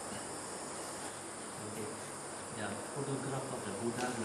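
Insects chirring steadily in the background, a continuous high trilling. A faint low murmur comes in over it in the second half.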